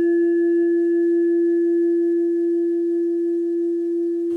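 A single steady ringing tone, the sustain of a struck bell-like intro sound, held without a break; its faint higher overtones die away, the last of them near the end, leaving a near-pure hum.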